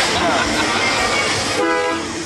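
Voices of people milling around, then a short, steady horn blast about one and a half seconds in, lasting under half a second.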